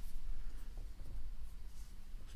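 Faint rustling over a low, steady hum.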